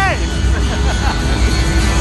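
Loud live concert sound captured on a phone in an arena crowd: heavy bass from the PA under a dense wash of music and crowd voices, with a held voice note falling away right at the start.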